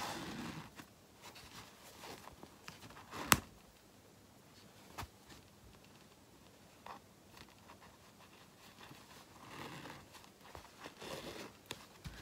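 Soft rustling of quilted cotton fabric being handled, with the faint rasp of basting threads pulled out through the cloth. One sharp tap about three seconds in, and a couple of lighter ticks after it.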